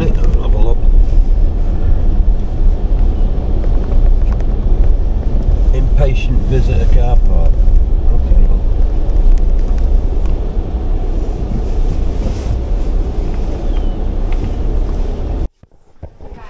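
Car cabin noise while driving slowly: a steady low rumble of engine and tyres, with brief low voices around six seconds in. It cuts off suddenly near the end.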